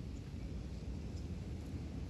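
Quiet outdoor ambience: a low, steady rumble with no distinct events.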